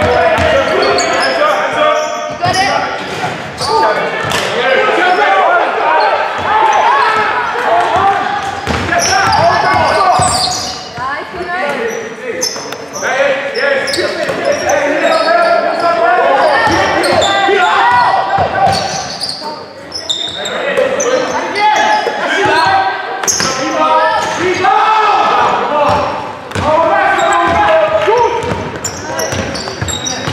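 Basketball dribbled and bounced on a wooden sports-hall floor during live play, with players' and spectators' voices calling out throughout, in a large hall.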